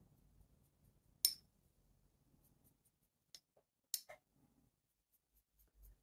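Paintbrush stirring watercolour paint in a small ceramic mixing dish: faint, with a few light clicks of the brush against the dish, the loudest about a second in.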